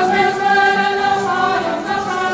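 A group of voices singing together in long held notes, with musical accompaniment.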